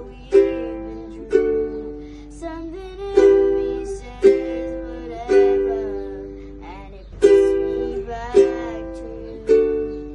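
Acoustic ukulele strummed in a song accompaniment without singing: a chord struck roughly once a second, each ringing and fading before the next.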